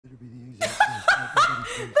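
A woman's high-pitched laughter in several short bursts, starting about half a second in, over a man's low voice.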